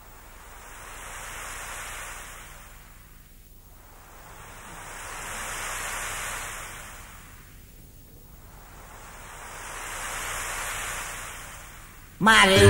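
Ocean surf: waves washing in as three slow swells of hiss, each building and fading over about four seconds.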